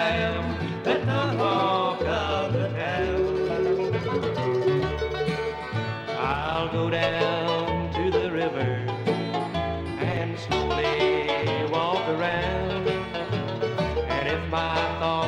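A bluegrass band plays an instrumental passage without singing: banjo, guitar and bass over a steady beat, with a held lead melody that slides between notes.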